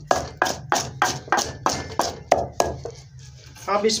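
Wooden pestle pounding green chilies, ginger and spices to a paste in a clay mortar, a steady run of knocks at about four to five a second that stops a little under three seconds in.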